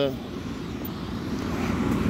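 Low, steady engine rumble from a box truck in the parking lot, growing slightly louder toward the end.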